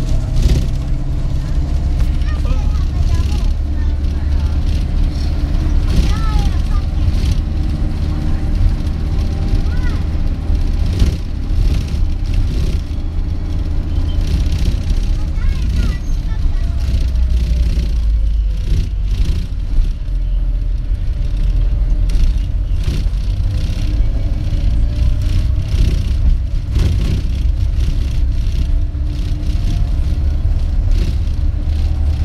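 Cabin noise inside a moving 16-seat public light bus: steady engine and road rumble with frequent rattles, and a faint whine that falls and then rises again as the bus slows and picks up speed.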